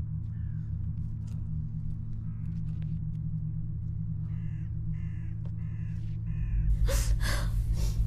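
A crow cawing four times in quick succession over a steady low drone, followed by louder breathy bursts near the end.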